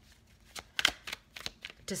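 Tarot cards being handled on a table: a string of sharp taps and card snaps, about seven in all, the loudest near the middle.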